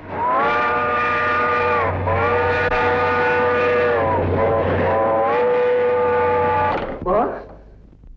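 A passing train sounding a multi-tone horn in three long blasts, each sagging in pitch where it breaks, over the low rumble of the train running. It stops shortly before the end and is followed by a brief rising sound.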